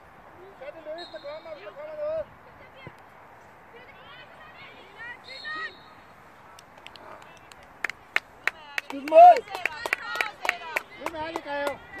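Distant shouts and calls of players on an outdoor football pitch. From about eight seconds in, a run of sharp hand claps breaks in with louder shouting nearby.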